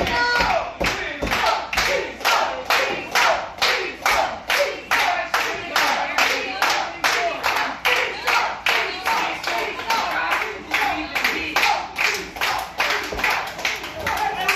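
Audience clapping in unison in a steady rhythm, about three claps a second, with voices underneath.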